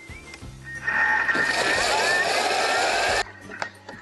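Thermomix kitchen robot blending a thick tomato-and-bread salmorejo purée. Its motor whine rises in pitch as it speeds up, then cuts off suddenly a little after three seconds.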